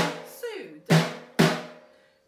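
Snare drum struck with drumsticks in a taiko rhythm: one hit at the start, then two more hits about half a second apart past the middle, each ringing out.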